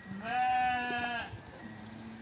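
A sheep bleating once: a single long, steady call lasting about a second, followed near the end by a faint low call.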